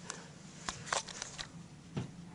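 Five or six faint, short clicks and rustles spread over a couple of seconds, over a low steady room hum.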